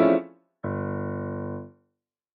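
Digital piano playing the close of an early jazz style piece: a chord that stops short, a brief gap, then a final low chord held for about a second and released.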